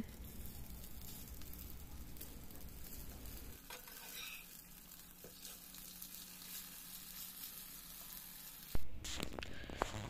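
Semolina pancakes sizzling steadily in a little oil in a nonstick frying pan while they are turned over with a metal spatula. A short knock sounds near the end.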